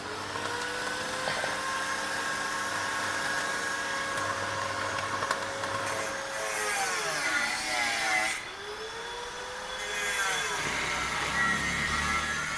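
Stick arc welder being used to cut through a steel frame profile: the arc's steady crackling hiss, which breaks off about eight and a half seconds in and starts again near ten seconds.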